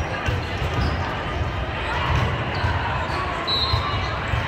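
Echoing sports-hall din during a volleyball tournament: volleyballs thudding as they are hit and bounced on the courts, over a continuous murmur of many voices. A brief high tone sounds near the end.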